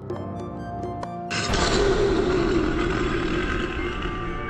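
Ambient background music, with a lion-roar sound effect that breaks in about a second and a half in and fades out over the next two seconds.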